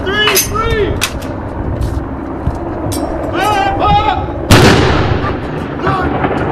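A 105 mm L118 light gun firing a single blank round in a ceremonial gun salute: one loud, sudden boom about four and a half seconds in, echoing away over about a second.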